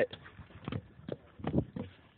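About six irregular knocks and scuffs in two seconds: hurried footsteps and handling as someone grabs a landing net.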